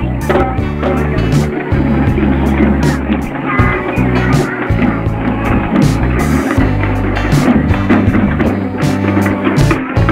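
Loud procession music led by traditional Sri Lankan hand drums, beaten in sharp strokes about once a second over a dense, steady mix of other instruments.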